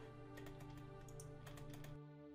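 Computer keyboard typing: a quick run of about a dozen light key clicks starting about half a second in, as numbers are entered into settings fields. Faint background music with steady held notes plays under the clicks.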